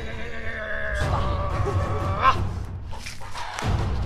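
Background music under a drawn-out, wavering whinny-like cry that rises to a loud peak a little past halfway, then fades.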